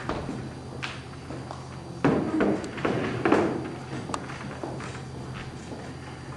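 Scattered taps and knocks of stage handling, loudest in a cluster about two to three and a half seconds in, over a steady low electrical hum from the stage sound system.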